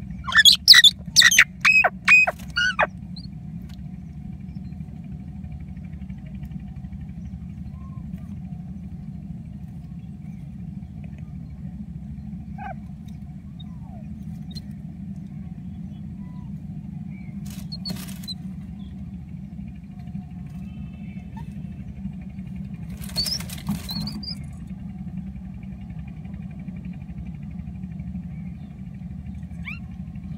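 Common mynas calling at the nest: a quick run of six or seven loud calls in the first three seconds, then a few fainter calls about two-thirds of the way through. A steady low hum runs underneath.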